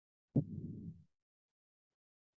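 A single short, low thump with a sharp onset about a third of a second in, dying away within a second, heard through an online call.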